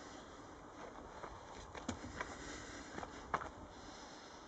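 Handling noise as a small whiteboard is set up on a stand, with a few light knocks and clicks over a faint background hiss.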